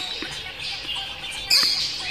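Young chicks peeping, with a louder, sharp peep about one and a half seconds in.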